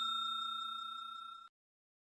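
The ringing tail of a bell-ding sound effect, fading steadily and dying out about a second and a half in.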